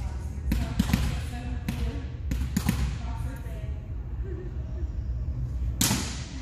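Volleyball hits and bounces on a hardwood gym floor, echoing in the large hall: a quick run of sharp smacks in the first three seconds, then one loudest smack near the end.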